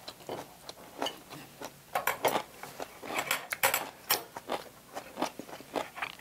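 A person chewing a crisp mouthful of seasoned hijiki seaweed with bean sprouts: irregular crunchy crackles and clicks with each bite.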